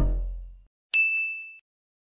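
The last chord of the outro music fading out, then a single bright bell-like ding sound effect about a second in that rings for about half a second.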